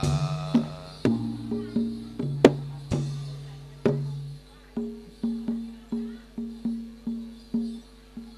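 Javanese gamelan ensemble playing: a steady run of struck metal notes, about three to four a second, over a low held tone that stops about four seconds in.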